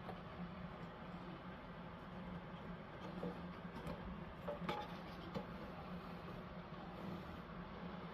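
Steady low room hum with hiss, and a few faint taps from handling the paper pieces about three to five seconds in.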